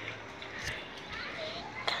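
Faint, distant children's voices calling during play, with a sharp knock near the end.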